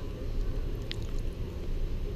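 Low, steady rumble with a single faint click about a second in.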